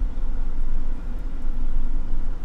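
Steady low rumble of a car engine idling, heard from inside the cabin.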